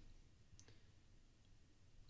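Near silence with a single faint click of a computer mouse about two-thirds of a second in.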